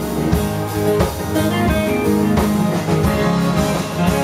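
Live rock band playing an instrumental passage with no vocals: electric and acoustic guitars over bass and a drum kit, with regular drum hits.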